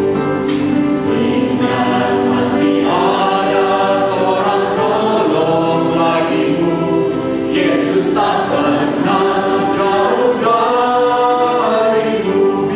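Worship singers singing an Indonesian hymn together, with several voices over a steady piano and keyboard accompaniment.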